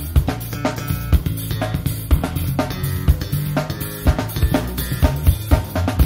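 Funk band playing an instrumental passage with no vocals. A drum kit (kick, snare, hi-hat and cymbals) leads with strong beats about twice a second over a steady bass line.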